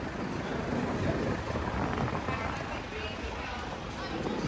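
City street ambience: a steady hum of road traffic with voices of people talking nearby.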